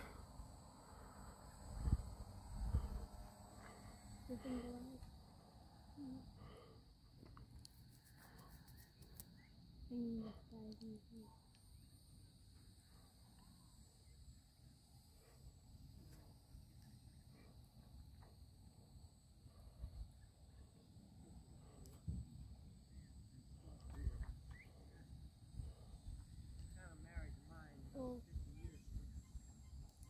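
Quiet outdoor ambience with a faint, steady high chirring of insects, a few soft low thumps on the microphone, and a brief murmured "mm-hmm" about ten seconds in.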